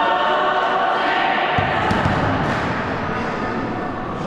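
Many voices singing together in chorus, echoing in a sports hall.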